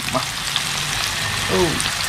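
Corn-flour-coated eel pieces frying in hot oil in a pan: a steady sizzle with scattered pops and crackles.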